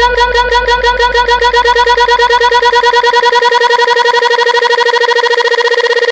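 Electronic DJ remix build-up: a single synth note repeated in a fast stutter that speeds up steadily, over a low bass hum that fades out about halfway through.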